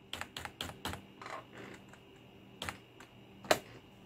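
Computer keyboard keys pressed several times: a quick run of light clicks in the first second, then two louder single clicks near the end, as the playing song is rewound.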